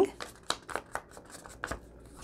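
Foam ink dauber dabbed on an ink pad and brushed along paper edges: a string of soft, irregular taps and scuffs.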